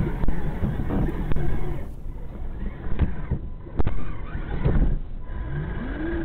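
RC crawler driving over snow, picked up by a microphone on the car: the electric motor and gears whine, and the chassis knocks and rattles over bumps. Sharp knocks come about a second in and again around three and four seconds, and a rising motor whine follows near the end.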